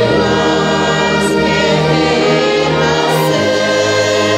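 Congregation singing a hymn together, accompanied by a church orchestra with trumpets, trombones and tuba; the full sound holds steady, with a change of chord about three seconds in.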